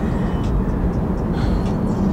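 Steady low rumble of a car heard from inside its cabin, road and engine noise with no distinct events.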